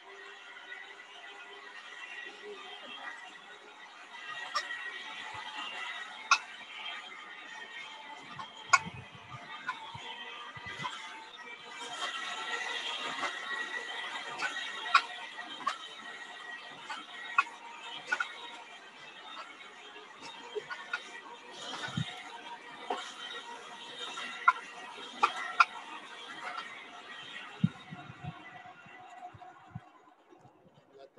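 Hand-cranked blower of a coal forge whirring steadily with a gear whine, blowing air into the bituminous coal fire to bring the steel up to red heat; it gets a little louder for a few seconds near the middle. Sharp clicks and pops come through it throughout.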